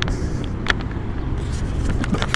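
Distant road traffic: a steady low rumble, with a single light click a little under a second in.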